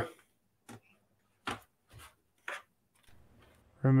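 An HP 14-dq0052dx laptop being turned over and handled on a desk: four short, light knocks and clicks spread out over a few seconds.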